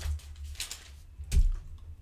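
Soft clicks and taps from handling things at a desk, with one louder knock and low thud about a second and a half in.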